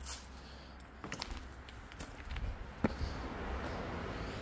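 Footsteps over loose rock rubble, stones shifting and clicking underfoot, with one sharper knock of rock on rock near three seconds in.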